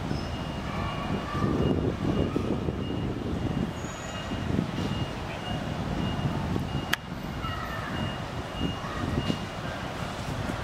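Outdoor background noise: an uneven low rumble like distant traffic, with faint far-off voices, a faint pulsing high tone throughout and one sharp click about seven seconds in.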